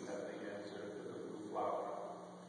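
A priest's voice intoning the liturgy, with a held syllable near the end.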